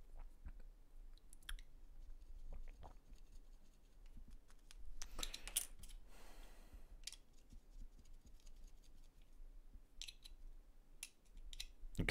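Plastic model kit parts and hobby tools being handled on a cutting mat: scattered faint clicks and taps, a few louder clicks about five seconds in, and a short scrape just after.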